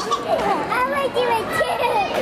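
Toddlers' high voices babbling and vocalising without clear words.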